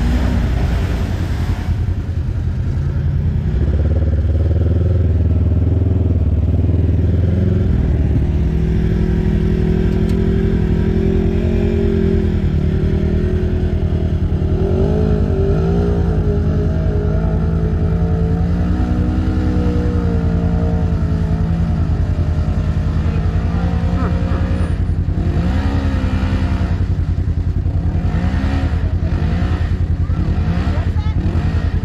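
Side-by-side UTV engines running steadily close by, with engine revving rising and falling in pitch as a machine drives through a mud hole, most clearly around the middle and again near the end.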